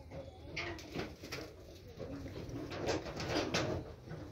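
A bird cooing softly, with rustling and scuffing noises throughout that are loudest about three seconds in.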